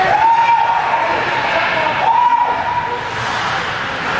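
A person's long high call held twice, each for a second or more, with a slight upward slide at the start of the first, over the noise of an ice hockey rink and its crowd.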